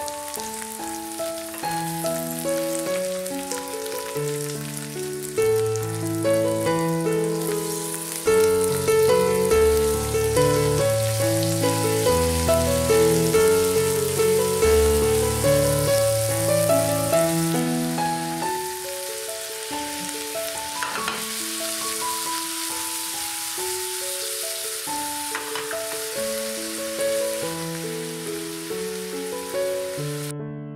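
Sliced okra sizzling in oil in a stainless steel frying pan, a steady hiss under background music of held keyboard notes, which is the louder sound. Two faint clicks come in the last third.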